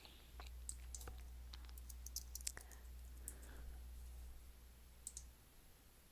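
Faint computer keyboard typing: irregular keystroke clicks over the first few seconds as a short phrase is typed, then a couple of clicks near the end, over a faint low hum that fades out shortly before the end.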